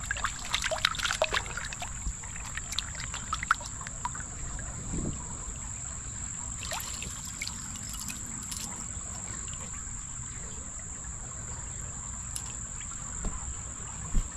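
A gloved hand splashing in shallow creek water and shifting gravel and small rocks, with clicks of stone on stone, busiest in the first two seconds and again about seven seconds in. Behind it a steady high insect drone runs on unbroken.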